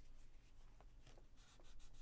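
Near silence: quiet room tone with faint light scratching and a couple of soft ticks.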